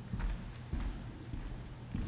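Footsteps of hard-soled shoes on a stage floor, a few uneven steps, over a low steady hum.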